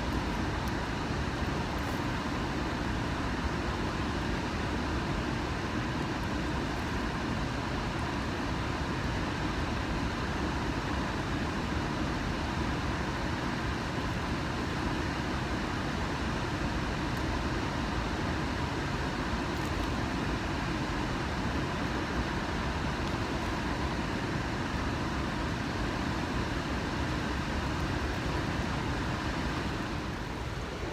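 Steady rush of water pouring from a dam spillway gate and running as fast current through the river below, an even roar that does not change.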